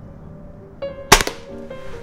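A single shot from a Weihrauch HW45 spring-piston air pistol: one sharp crack about a second in, over background music.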